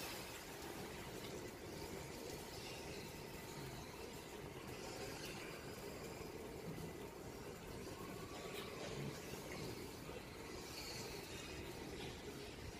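Faint, steady background noise of a piglet pen: a low even hiss with no clear squeals, grunts or knocks.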